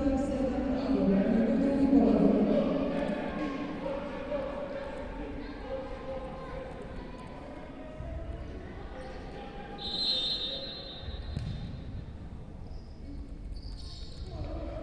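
A futsal ball bouncing and players' shoes on a wooden sports-hall floor, with voices echoing around the hall. About ten seconds in, a referee's whistle blows once, one steady blast of about a second, signalling the restart of play.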